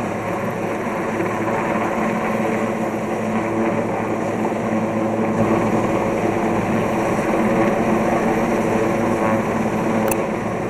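Helicopter hovering overhead with a slung load on a long line, its rotor and turbine engine running steadily and loud, growing a little stronger in the low end about halfway through.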